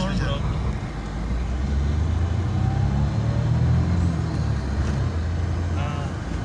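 Car engine accelerating hard as the car is driven off at speed. Its low drone climbs in pitch and grows louder over the first few seconds, then holds.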